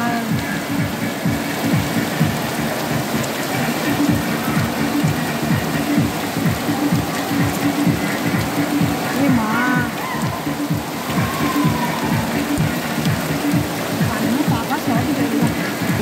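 Heavy rain falling on the circus tent and the wet ring: a steady hiss with a dense low patter of drops.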